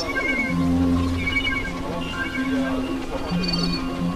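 Experimental electronic drone music from synthesizers: steady low held tones layered with short high bleeps and a few pitches that slide downward.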